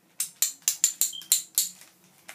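Small hard plastic dominoes clicking against each other and the table, about seven sharp clacks at roughly four a second.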